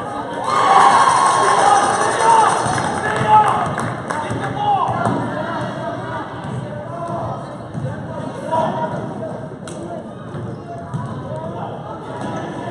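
Gym spectators shouting and cheering, loudest over the first few seconds, as a basket is scored. After that come quieter voices and a basketball bouncing on the gym floor as play moves up the court.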